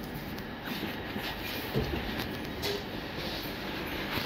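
Inside a Class 319 electric multiple unit on the move: a steady rumble of wheels on rail, with scattered light clicks and knocks.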